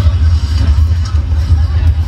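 Soundtrack of a roller coaster point-of-view ride animation played loud over a venue sound system: a heavy low rumble with music, and crowd voices underneath.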